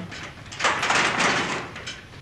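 A metal locker door and its padlock rattling as they are yanked at, a noisy rattle lasting a little over a second: the lock won't open.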